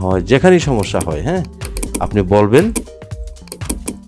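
Computer keyboard typing and clicking, a run of short clicks.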